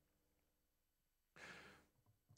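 Near silence, then about one and a half seconds in a single soft breath, about half a second long, from a person about to speak.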